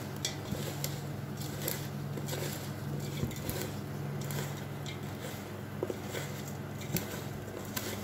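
A bare hand mixing a dry spice mix with chunks of jaggery in a steel pot: repeated soft crunching, rustling and scraping against the metal, over a steady low hum.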